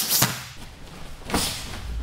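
Two people grappling barefoot on a matted floor: a thump just after the start and another about a second later, with the rustle of their training jackets.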